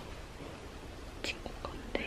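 A woman whispering softly, with two short sharp clicks, about a second in and near the end.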